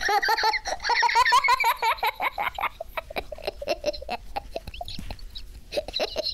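A young child giggling and laughing: a high-pitched run of laughter in the first few seconds, breaking into short, choppy giggles.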